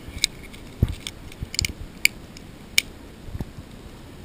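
Thin aluminum from a drink can, painted with Imron, being crumpled by hand: irregular sharp crinkles and snaps of the metal, scattered through.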